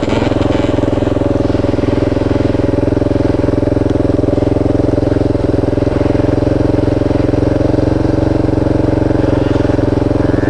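Two-stroke dirt bike engine idling close by, holding one steady pitch.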